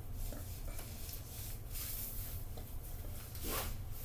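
Fabric rustling and rubbing as a knee-high sock is pulled up over leggings: short scratchy swishes, with a louder one near the end, over a steady low hum.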